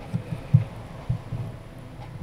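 Doosan 4.5-ton forklift's engine idling: a low, uneven throb.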